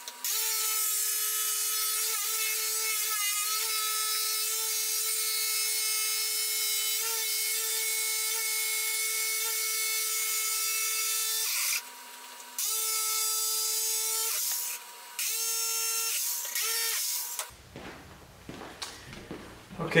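Electric jigsaw cutting through MDF with a steady, high motor whine. It runs for about twelve seconds, pauses briefly twice, runs for two shorter spells, then stops a couple of seconds before the end.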